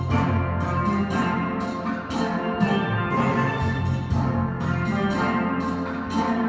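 A steel pan ensemble playing together. Low bass pans struck with rubber-tipped mallets hold a steady repeated root-note pattern beneath the ringing higher pans.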